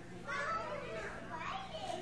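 Children's voices chattering and calling out indistinctly, several overlapping, over a low steady hum.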